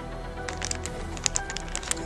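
Foil blind-bag packaging crinkling in a quick run of sharp clicks as a small keychain figure is handled and pulled out, over steady background music.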